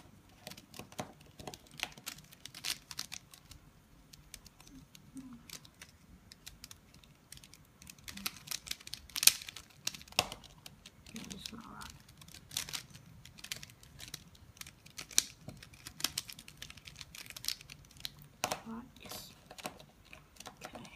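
A 3x3 mirror cube being turned by hand: a quick, irregular run of plastic clicks and clacks as its layers are twisted, with one sharper snap about nine seconds in.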